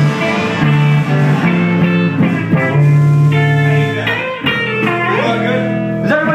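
Electric guitar played through an amplifier, a slow run of held notes and chords that change every half second to a second.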